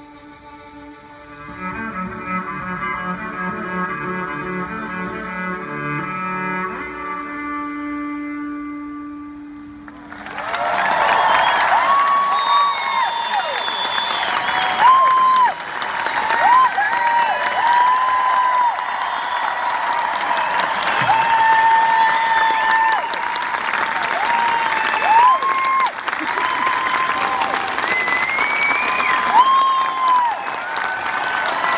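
Cello and violin ensemble playing the last bars of a piece and ending on a long held chord. About ten seconds in, the audience starts applauding and cheering, with many loud whistles over the clapping.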